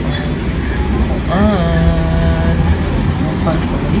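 A person's voice drawing out one long held vowel over a steady low rumble.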